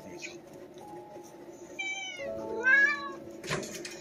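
A cat meowing twice, two short calls about half a second apart, the second one louder. A steady background tone runs underneath, and a brief crackle comes near the end.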